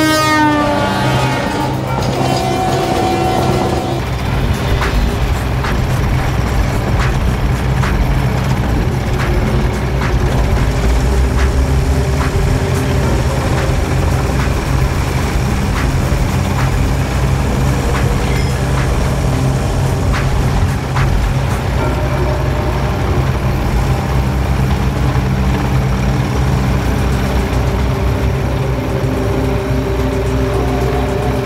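Horn of a passing electric freight locomotive, its pitch falling as it fades away in the first second or two. A steady low rumble follows, under music with a regular beat.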